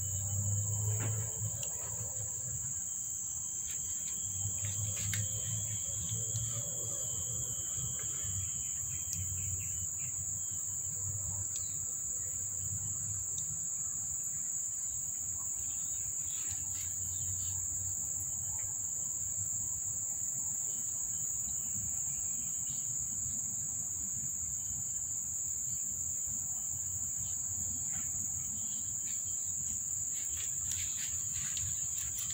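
Steady, high-pitched drone of insects calling without a break.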